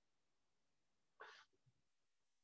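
Near silence, with one faint, brief noise about a second in.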